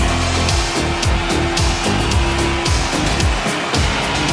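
The opening bars of a synth-pop dance track, with a steady electronic kick drum and hi-hats under synthesizers.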